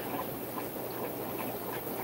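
Steady background hum and hiss of fish-room aquarium equipment, without distinct knocks or tones.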